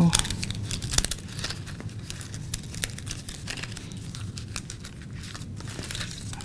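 Stiff poster board fringe crinkling and rustling in irregular crackles as it is handled and curled, with one sharper click about a second in.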